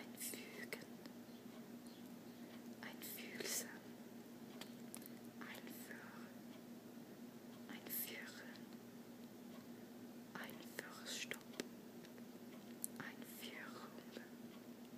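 Soft whispering: short whispered words come one at a time with pauses of a second or two between them, over a steady low hum.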